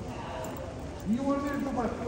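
Footsteps on a hard concourse floor, with people's voices talking nearby.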